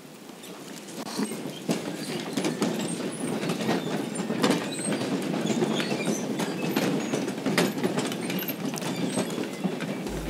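A congregation getting to its feet: many chairs knocking and scraping, feet shuffling and clothes rustling. The clatter builds up about a second in and keeps going.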